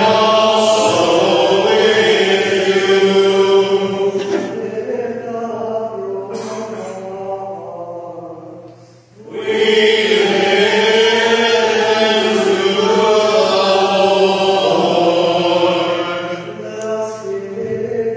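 Voices singing a chant-like part of the liturgy in two long phrases, with a short break about nine seconds in.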